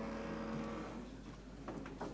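An orchestra's held chord dies away in the first second, leaving a brief lull of faint background noise from a live opera performance, with a few soft clicks near the end.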